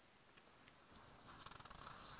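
Near silence, then from about a second in, soft paper rustling and scraping as a notebook sheet is slid and handled.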